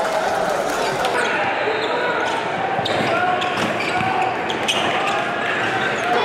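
Gym ambience of crowd and player voices, with a basketball bouncing on the hardwood court and a few sharp knocks scattered through.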